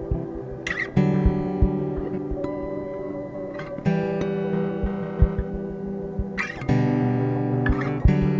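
Lo-fi ambient guitar music drenched in reverb and delay: sustained chords that change about every three seconds, with short hissy swishes between them and soft low thumps underneath.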